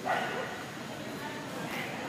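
A dog gives one short, sharp bark right at the start, echoing in a large hall, over a low murmur of voices.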